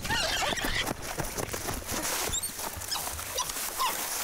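A netted spider monkey giving short, wavering squeals, over rustling and crunching of dry grass.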